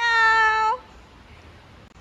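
A high voice calls a long, drawn-out sing-song "halooo" for under a second, followed by faint background noise from the hall.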